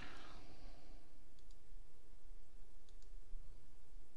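Two faint double clicks, about a second and a half in and again near three seconds, as a control button is pressed, over a steady low hum of room tone.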